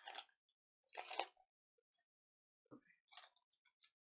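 Foil wrapper of a trading-card pack crinkling as it is torn open by hand: two short crackly bursts in the first second and a half, the second the loudest, then a few softer crinkles near the end.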